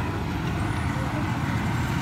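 Steady low engine and road rumble of slow traffic, heard from inside a moving vehicle.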